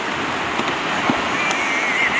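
Steady rushing noise of wind and surf at the shoreline, with a faint wavering tone near the end.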